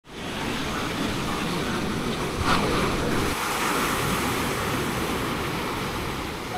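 Ocean surf breaking and washing onto a sand beach: a steady rushing noise, with one brief knock about two and a half seconds in.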